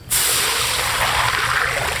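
Water pouring from a container into a large empty wok, splashing on the metal as it fills; the steady rush starts abruptly right at the start.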